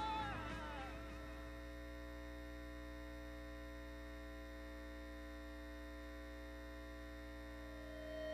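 The tail of a music track fades out in the first second, leaving a faint, steady electrical mains hum with several constant tones and nothing else.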